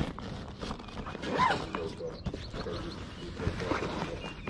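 A nylon sports backpack being handled and rummaged through: fabric rustling and light, irregular knocks from the gear inside.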